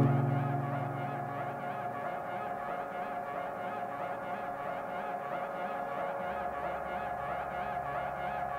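Ambient electronic music: synthesizer tones in a quickly repeating, wavering figure over a held steady tone. A deep sustained note fades away in the first second or two, and a low drone comes in near the end.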